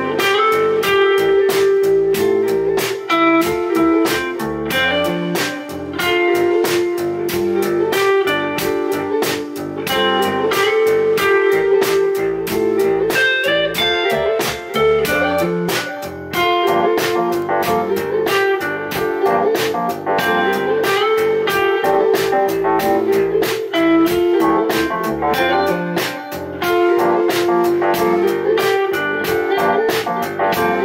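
Live rock band playing an instrumental passage with no vocals: electric guitar lines over a steady drum-kit beat with cymbal hits.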